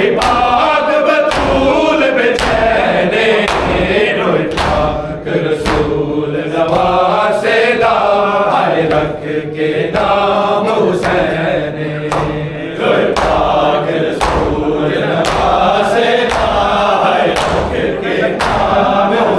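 Men's voices chanting a nauha, a Shia lament, together, with the steady slaps of hands on bare chests (matam) keeping the beat, about one to two strikes a second.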